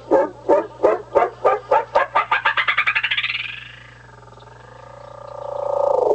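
Guitar delay pedal at runaway feedback, self-oscillating. The repeats speed up and climb in pitch until they merge into one gliding tone, the usual sign of the delay time being shortened. The tone then sinks, fades briefly about four seconds in, and swells back as a loud wavering drone.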